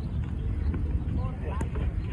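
Wind rumbling on the microphone with faint distant voices, and a single sharp knock about one and a half seconds in as the cricket bat strikes the ball.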